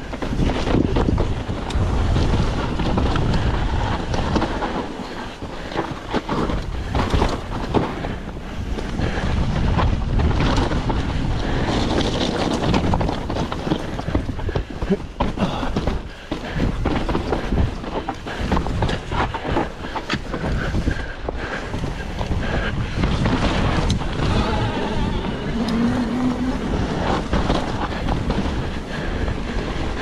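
Wind rushing over the camera microphone as a full-suspension mountain bike descends rough rocky trail, tyres rolling and crunching over rock and gravel, with frequent sharp knocks and rattles from the bike as it hits rocks.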